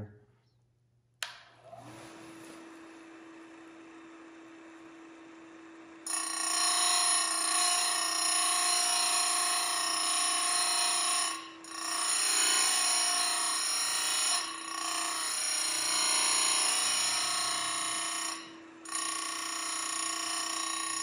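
Simington 451c chain grinder switched on with a click, its electric motor spinning up to a steady hum, then about six seconds in the wheel bites into a square-ground chainsaw cutter tooth: a loud, ringing grind with several high steady tones that drops away briefly three times.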